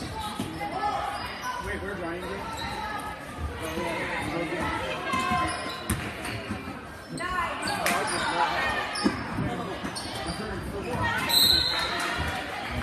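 Basketball dribbling on a hardwood gym floor during a game, with voices from the crowd and benches echoing in the large gym. A short, high whistle blast from the referee comes near the end.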